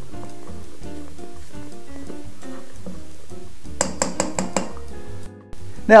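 Background music playing, with a quick run of about five clinks about two-thirds of the way in: a spatula knocking against a stainless steel mixing bowl of folded egg whites.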